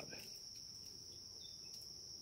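Faint, steady high-pitched insect chorus, one constant shrill note without a break.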